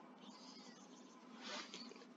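Near silence: faint room tone, with one brief soft sound about one and a half seconds in.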